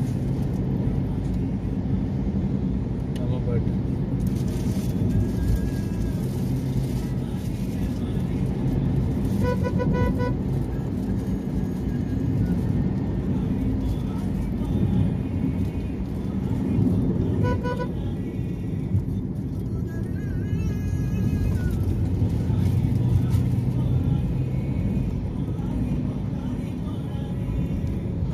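Engine and tyre road noise heard from inside a moving car, with a vehicle horn sounding briefly twice, about ten seconds in and again near eighteen seconds.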